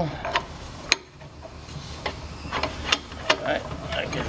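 Metal clicks and knocks, about five of them, as flexible stainless-steel hoses are handled and their threaded union fittings are pushed together and snugged by hand, over a low steady hum.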